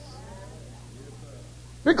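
A pause in a man's preaching: a steady low hum with a faint, wavering, voice-like call. The preacher's voice starts again just before the end.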